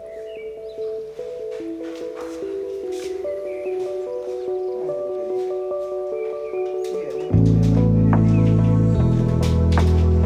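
Background music: a soft melody of held notes, joined about seven seconds in by a deep, loud bass line.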